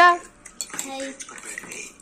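Metal spoons clinking and scraping in small steel bowls as people eat, light scattered clicks after a spoken word at the very start.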